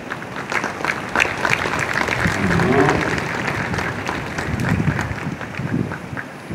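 Audience applauding in a large crowd, starting about half a second in and dying away near the end, with some voices underneath.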